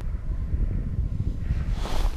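Wind buffeting the camera's microphone: a low, uneven rumble.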